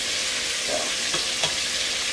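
Buttermilk-battered chicken thighs frying in hot oil in a pan, a steady sizzle. A couple of light clicks of metal tongs in the pan come about halfway through as the pieces are turned.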